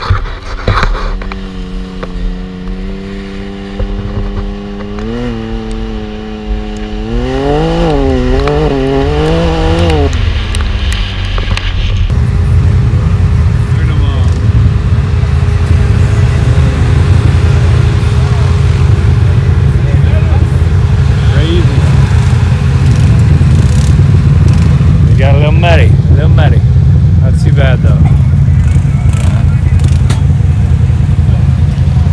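Can-Am Maverick X3 engine running, its pitch steady at first and then rising and falling several times as the revs change. After about twelve seconds this gives way to a steady low rumble with voices.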